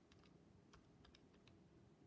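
Faint, irregular clicks of calculator buttons being pressed, about seven presses in two seconds.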